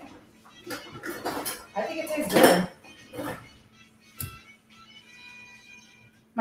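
Metal kitchen utensils clinking and knocking against pots and pans on a stove, in a string of short, irregular clatters, the loudest about two and a half seconds in.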